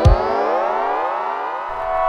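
A siren-like sweep in the electronic soundtrack: a cluster of tones glides steadily upward and levels off into a held chord near the end, with the beat dropped out beneath it.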